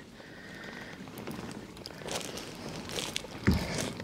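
Fishing reel being wound on a kayak, with faint handling clicks and one low knock against the hull about three and a half seconds in.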